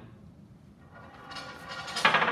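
A ball rolling down a metal U-channel track and along a lab bench: a steady rolling rumble that starts faint and grows louder over the second half.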